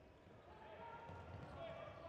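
Faint sound of a handball game on an indoor court: the ball bouncing on the floor, with players' voices.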